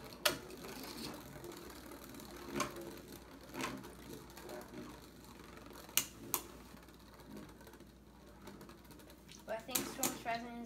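Beyblade spinning tops in a plastic stadium: a faint steady whir broken by a handful of sharp clacks as the tops strike each other and the stadium wall, two of them close together about six seconds in.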